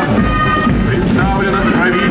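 Live parade sound as a column of troops marches past: band music mixed with voices.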